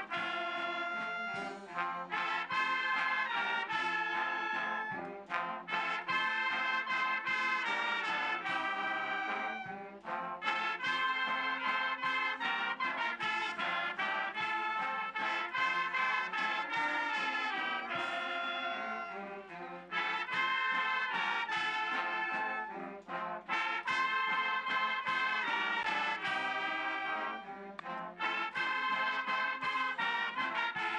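Brass band music playing, with short breaks between phrases.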